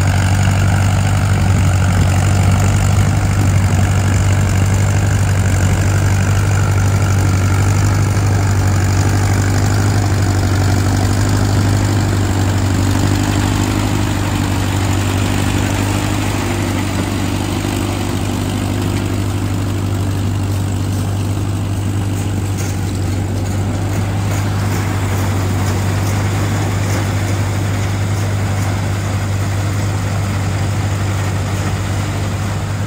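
Vintage farm tractor engine running steadily under load as it pulls a working corn picker through standing corn, a constant low hum with the picker's machinery clatter over it.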